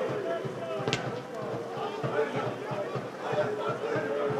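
Pitch-side sound of a football match in a near-empty stadium: scattered voices calling out, with one sharp thud of a ball being kicked about a second in.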